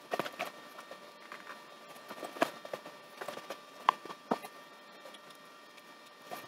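Small clicks and taps from handling a smart plug's circuit board and plastic housing during reassembly, irregular and light, with a few sharper ticks in the middle.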